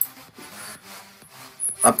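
A pause between a man's spoken sentences: one sharp click at the start, then faint low background sound, and his voice returns near the end.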